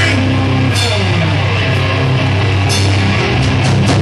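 Hardcore metal band playing live, with distorted electric guitar, bass and drum kit in an instrumental stretch without vocals. Cymbal crashes ring out about a second in and again near three seconds.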